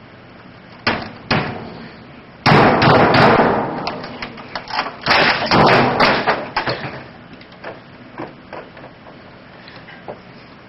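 Computer equipment on an office desk being beaten in a fit of anger: two sharp knocks, then a long loud crash and a flurry of hits and clattering that thin out towards the end.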